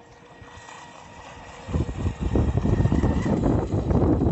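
Distant RC catamaran's motor whining steadily across the water. About two seconds in, loud, gusty wind rumble on the microphone starts and covers it.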